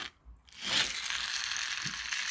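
Toy car friction (flywheel) motor's plastic gears whirring as the car is pushed along by hand, the wheels gripping the surface and spinning the flywheel up. A brief click comes first, and the steady whirr starts about half a second in.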